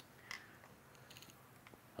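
Near silence: room tone, with a faint click about a third of a second in and a few fainter ticks later.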